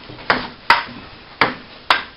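Table tennis ball clicking off paddles and the table during a rally: four sharp clicks at uneven spacing.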